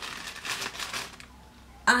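Plastic wrapping of packs of cotton makeup-remover pads crinkling as they are handled, stopping after a little over a second.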